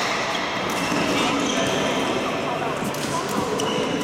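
Echoing sports-hall background of indistinct voices, with a few short knocks, typical of play on nearby badminton courts.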